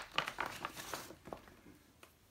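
Handling noise from ration packaging: a quick run of light clicks and plastic crinkles as packets and a tin can are moved by hand. It dies away after about a second.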